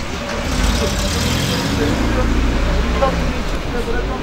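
Road traffic going by on the street, a steady rumble and tyre hiss that swells about a second in, with faint voices in the background.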